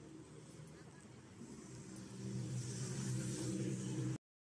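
City street traffic: a motor vehicle's engine running close by, growing louder about two seconds in as it comes nearer.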